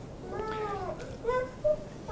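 A faint, high-pitched cry in the room, not speech: one rising-and-falling wail about half a second long, then two short squeaks near the middle.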